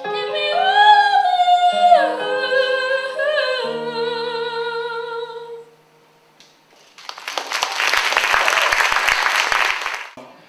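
A woman sings into a microphone over sustained keyboard chords, ending on a long held note a little over five seconds in. After a short gap, audience applause fills the last three seconds.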